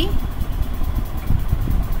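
A steady low rumble of background noise, engine-like, runs under a pause in the narration.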